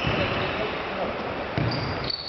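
Futsal ball play on a sports-hall court: the ball thumps off feet and the floor, with brief high shoe squeaks and players' voices in the echoing hall.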